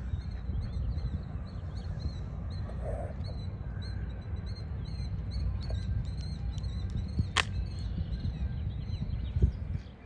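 A small songbird chirping in quick, repeated high notes over a steady low rumble, with a sharp click about seven seconds in.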